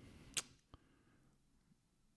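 Near silence: quiet room tone, broken by one short, sharp click about half a second in and a fainter tick soon after.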